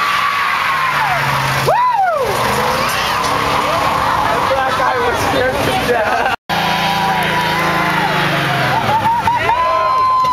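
Car tyres squealing in a long, steady high screech during burnouts, over the drone of the engines and a shouting crowd; the squeal comes back strongly near the end.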